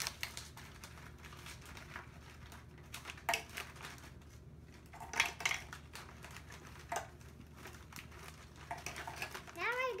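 Oreo cookies being handled out of their plastic package tray and dropped into a food processor's plastic bowl: scattered light clicks and brief crinkles of the wrapper.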